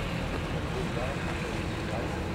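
Faint distant voices of players and spectators over a steady low rumble, with no bat or ball impact.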